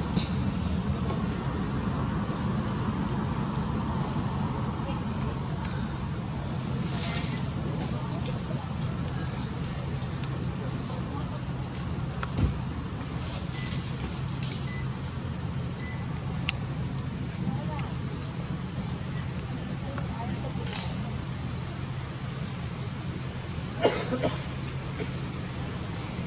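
Insects singing in one steady, high-pitched tone over a low, steady rumble. Two short knocks sound, one about halfway through and one near the end.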